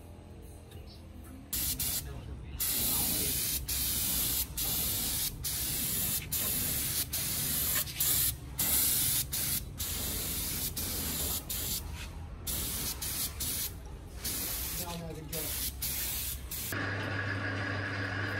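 Air spray gun spraying a coat of finish in a loud, steady hiss from about a second and a half in. The hiss is broken by many short pauses as the trigger is let off and pulled again. Near the end the hiss stops and a steady low hum begins.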